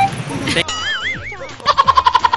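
Cartoon-style comedy sound effects: a smooth, wavering whistle-like tone that wobbles up and down, then near the end a quick run of short bleat-like pulses, about ten a second.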